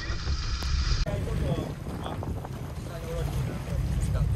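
Low steady rumble of a fishing boat's engine under way, with wind on the microphone and faint voices. The sound changes abruptly about a second in.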